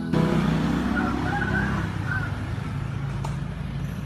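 Outdoor background noise, a steady rumble and hiss like road traffic, loudest in the first second and easing off. The background music cuts out at the start. A few brief higher-pitched sounds come between one and two and a half seconds in.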